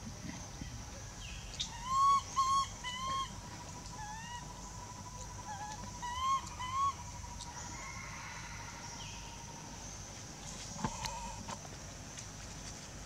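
Infant long-tailed macaque giving short, arched, whistle-like calls in pairs and threes, loudest about two seconds in and again around six seconds. A steady high insect drone runs underneath.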